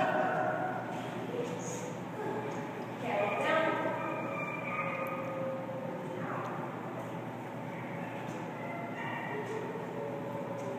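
A person's voice speaking briefly at a few moments, over a steady room hum.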